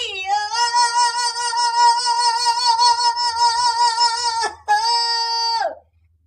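A high voice sings one long held note with a strong vibrato for about four seconds. It then breaks off and sings a second, shorter held note that slides down at the end.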